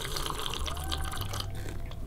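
Several people sipping and slurping drinks from mugs and teacups, a run of short clicking slurps.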